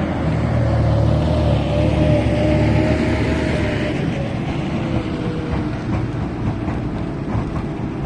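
A John Deere tractor's diesel engine runs steadily with a whine while hauling a loaded sugar beet trailer across the field. About four seconds in, this gives way to the more even, distant running of a Vervaet self-propelled sugar beet harvester lifting beet.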